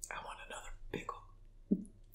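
A woman's faint whispered voice, in a few short, soft bits with pauses between them.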